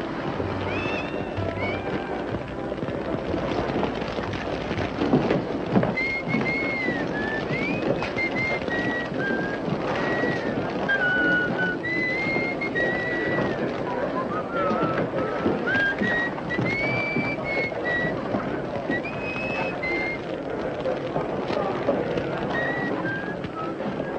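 Orchestral film score with a high, gliding melody line, laid over a steady, dense crackling rush of a building fire.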